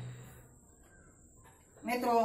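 A crow cawing once near the end, loud and harsh, over quiet room tone.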